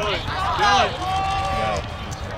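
A spectator shouting from the sideline of a lacrosse game: short yells, then one long drawn-out call about a second in. A steady low rumble lies underneath.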